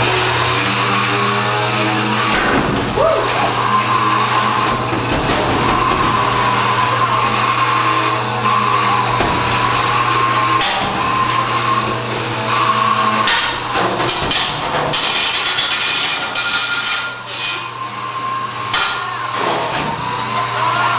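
Beetleweight combat robots fighting: the electric whine of a spinning disc weapon and drive motors wavers in pitch, broken by repeated sharp metal-on-metal hits as the spinner strikes the steel wedge robot and the arena walls. The hits come thickest in the second half.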